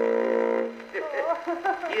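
A single held, buzzy wind-instrument note on an early acoustic phonograph cylinder recording. It stops under a second in and is followed by laughing talk. It is a comic sound effect for the character's nose trick.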